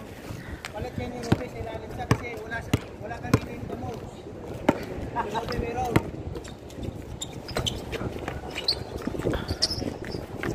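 A basketball bouncing on an outdoor concrete court: sharp bounces about every two-thirds of a second in the first few seconds, then more scattered ones, among players' voices and a laugh.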